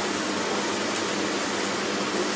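Steady, even hiss of masala paste sizzling in oil in a frying pan on a gas stove, while it is being fried down (koshano).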